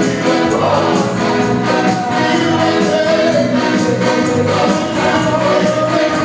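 A church choir singing a gospel song, amplified over a PA, with a tambourine jingling steadily on the beat.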